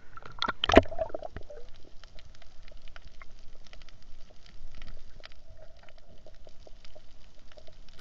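Underwater sound picked up by the camera: a few sharper knocks and clicks in the first second, then a sparse, steady crackle of faint clicks over a low hum.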